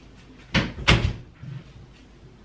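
A wooden door banging twice in quick succession, about a third of a second apart, with a fainter knock half a second later.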